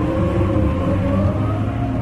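Background music: a sustained, steady low drone chord.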